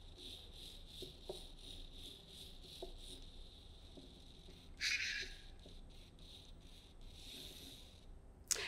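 Small robot drive motors of an Ozobot line-following bot giving a faint high-pitched whir that pulses quickly as it drives along the line. A few soft clicks, and a short louder hiss about five seconds in.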